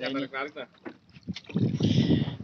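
A voice briefly at the start, then rough wind and water noise on a small wooden fishing boat at sea, growing louder near the end.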